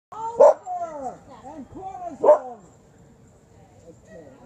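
A dog barking twice, loudly, about two seconds apart, with shorter rising-and-falling yelping calls in between.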